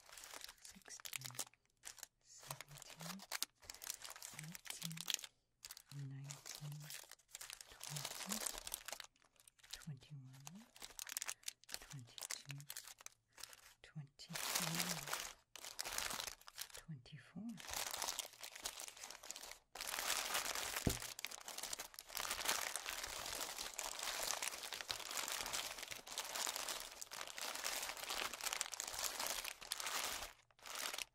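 Plastic candy wrappers of a pile of Reese's Peanut Butter Cups crinkling as hands sort and count them: a run of separate rustles that becomes a near-continuous crinkle in the second half.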